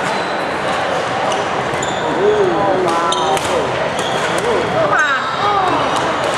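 Badminton doubles rally on a wooden sports-hall floor: sharp racket hits on the shuttlecock and short, high shoe squeaks, over steady hall noise with voices.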